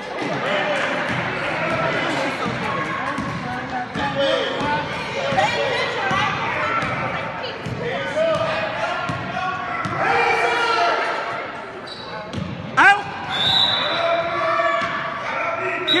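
Voices of spectators and players in a gymnasium, with basketballs bouncing on the hardwood court. Near the end comes a sharp rising squeak, then a short, steady, high whistle.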